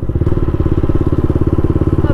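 Yamaha MT-15's single-cylinder engine running at a steady, low road speed through an aftermarket exhaust with its dB killer removed, a fast even exhaust beat with no revving.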